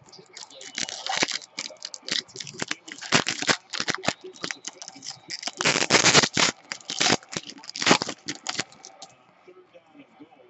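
Stiff cardboard trading cards being flipped and slid against one another in the hands: a quick, irregular run of papery swishes and clicks, loudest around the middle.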